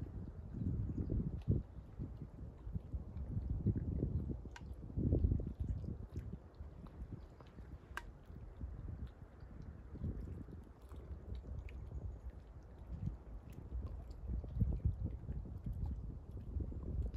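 Wind buffeting the microphone outdoors: a low, uneven rumble that swells and fades in gusts, with a few faint clicks.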